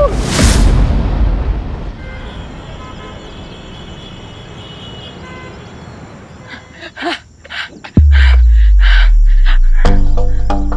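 A loud burst of noise, a dramatic TV sound effect, that dies away over a few seconds. About eight seconds in, the soundtrack comes in loudly with a deep bass drone and a rhythmic beat.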